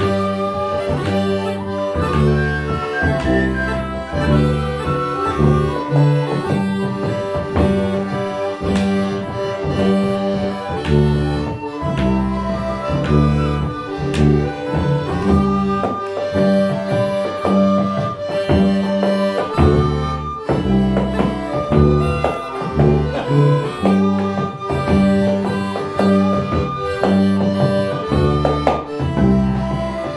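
Small folk ensemble playing a simple South African tune: accordion, penny whistle, cornemuse (French bagpipe), bodhrán and tuba together. The bass notes pulse in a steady, repeating rhythm under the melody.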